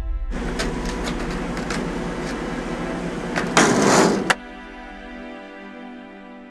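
Skateboard wheels rolling on hard pavement with scattered clicks, growing louder about three and a half seconds in and ending in a sharp clack. Ambient music with sustained tones follows.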